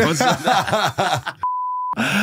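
Men laughing, then near the end a censor bleep: a steady single-pitched beep lasting about half a second, with all other sound cut out beneath it.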